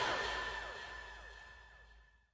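The last notes of the song's backing track fading out: a held high tone and a few falling sweeps die away over about a second and a half.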